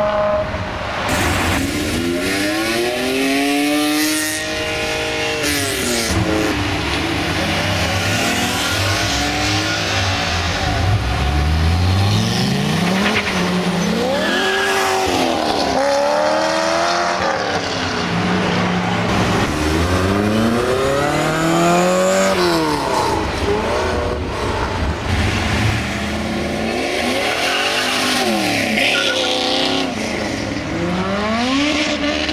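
Several performance cars accelerating hard past one after another, each engine note climbing with the revs, then dropping as it shifts or passes and fades.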